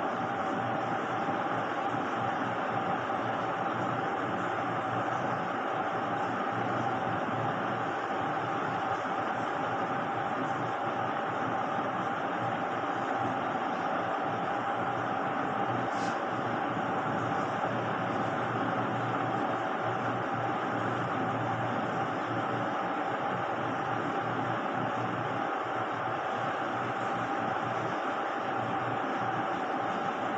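Steady background hum and hiss, even and unchanging, with a constant mid-pitched tone running through it; one brief tick about sixteen seconds in.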